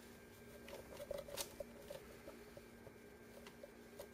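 Faint handling noise from a camera being repositioned: a few soft clicks, the sharpest a little over a second in, and light rubbing over a low steady hum.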